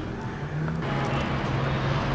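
Street traffic noise from outside the window: a steady rush of passing cars that grows louder a little under a second in, over a low steady hum.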